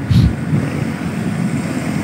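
Street traffic noise, with motorbikes passing close by, as a steady low rumble. There is a brief louder low bump just after the start.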